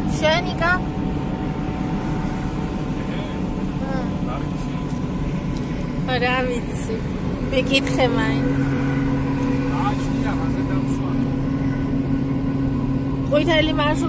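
Steady road and engine noise inside a car cabin at highway speed. A low engine hum becomes steadier and more prominent about eight seconds in. Short, high-pitched voice sounds come several times: near the start, in the middle and near the end.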